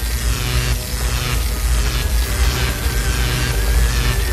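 Cartoon electricity sound effect: dense crackling and buzzing over a deep rumble, with repeated falling sweeps, laid over electronic music. A thin steady whine joins near the end.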